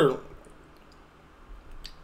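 A pause in a man's talk: the end of a spoken word at the start, then faint room hiss with a few small clicks, the clearest one shortly before the end.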